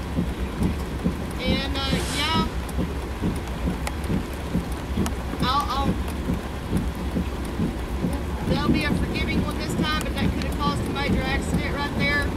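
Steady rain with the constant low rumble of an idling vehicle engine underneath; faint, indistinct voices come through a few times.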